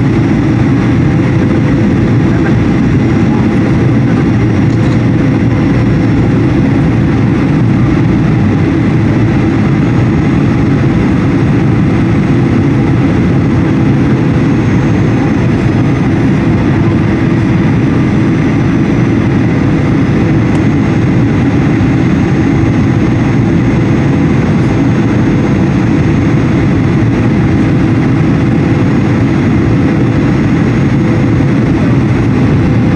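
Cabin noise of a Boeing 737-800 on approach, heard from a window seat beside its CFM56-7B turbofan engine: a loud, even, low rumble of engine and airflow with a faint steady tone above it.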